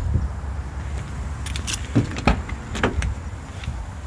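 A few clicks and knocks as the door of a 1994 Ford Ranger pickup is opened and someone climbs into the cab, over a low rumble.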